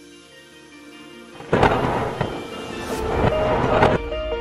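Quiet held music tones, then about a second and a half in a loud thunderclap sound effect breaks in and rumbles on, with several sharp cracks through to the end.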